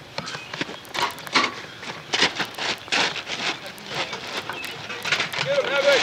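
Wrestlers scuffling on grass, with indistinct shouting and a run of sharp knocks and thuds.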